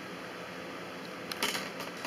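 Steady faint room hiss, then a quick cluster of light clicks and knocks about a second and a half in, from hands setting cactus strips against a glass baking dish of water.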